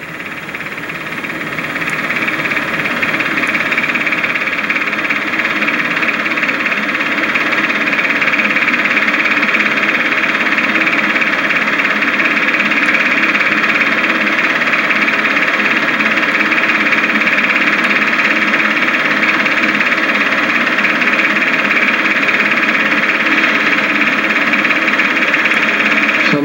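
Steady hiss with a faint hum, rising in level over the first couple of seconds and then holding unchanged.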